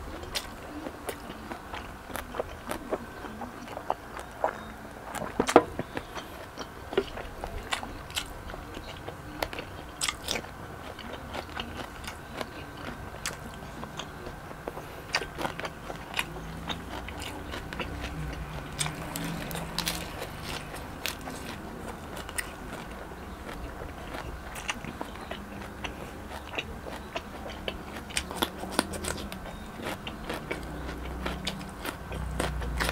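Close-miked chewing and crunching of crispy lechon belly (roast pork belly with crackling skin), with many sharp crackles scattered through; the loudest crunch comes about five and a half seconds in.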